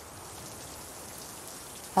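Shower water spraying in a steady hiss.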